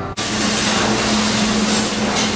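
Steady restaurant background noise: a loud, even hiss with a steady low hum under it, like a kitchen ventilation fan or grill running. It cuts in suddenly just after the start.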